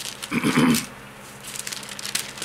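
A man clearing his throat once, a short rough rasp about half a second in.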